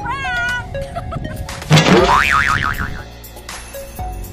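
Comic sound effects laid over background music: a short wobbling tone in the first half-second, then a louder effect about two seconds in whose pitch climbs and then warbles up and down for about a second.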